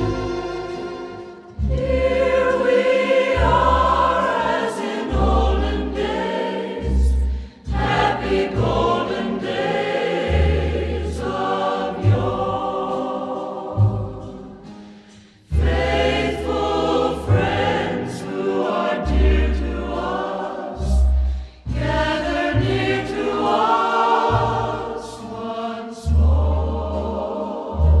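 Choir interlude of a slow Christmas ballad: a choir sings long, held phrases over soft instrumental backing and a low bass line, with short breaks every six to eight seconds.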